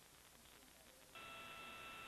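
Faint hiss, then about a second in a steady electrical hum made of several fixed high tones switches on abruptly and holds.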